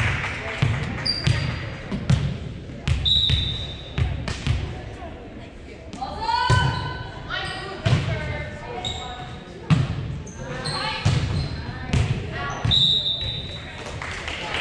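Volleyball rally in a gym: a volleyball struck again and again by players' hands and forearms, sharp knocks that echo around the hall, with short high sneaker squeaks on the hardwood floor between hits.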